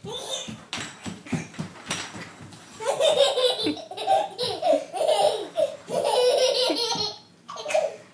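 A toddler laughing hard in a long run of high, choppy belly laughs with snorting, starting about three seconds in, after a few sharp knocks and scuffles from the first seconds.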